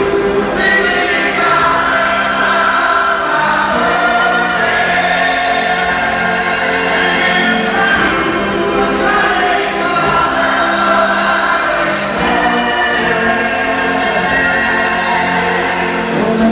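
Live concert recording of a song: several voices singing long held notes together in a choir-like sound, backed by the band.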